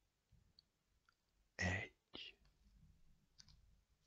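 Quiet pause in a hypnotist's spoken induction, broken about halfway by one short, soft vocal sound from the hypnotist, followed by a few faint clicks.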